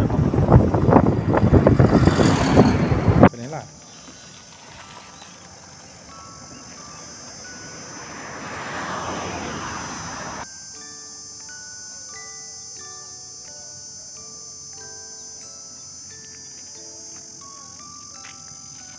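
Wind buffeting the microphone on a moving scooter for about three seconds. Then it cuts to quiet background music of short, evenly held notes over a steady high chirring of crickets.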